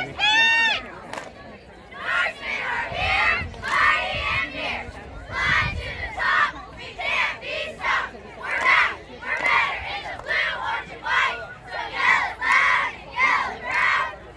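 Cheerleading squad shouting a cheer in unison, a steady rhythm of short yelled calls. A shrill, high cry rings out right at the start.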